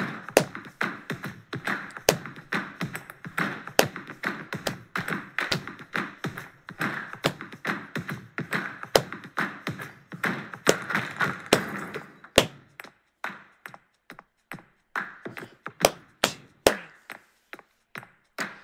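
Hand claps beating out a clapping rhythm over a backing track with a steady beat. About twelve seconds in the backing drops out, leaving a few separate claps with gaps between them.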